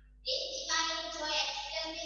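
A high voice singing held notes, starting about a quarter second in after a moment of quiet.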